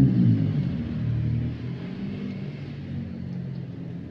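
Batter-coated tempeh slices sizzling in hot oil in a wok. Under the sizzle runs a low, wavering rumble that fades away over the few seconds.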